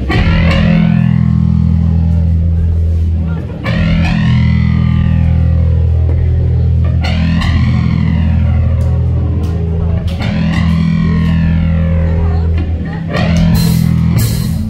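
A rock band playing live: electric guitar and bass hold a low, distorted chord, and a sweeping guitar effect rises and falls four times, about every three and a half seconds. Drums and cymbals come in near the end.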